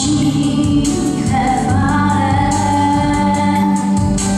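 A boy singing a song into a microphone over amplified backing music, holding long notes.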